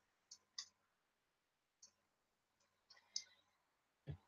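Near silence, broken by a few faint, short clicks of small wooden hearts being set down on a board.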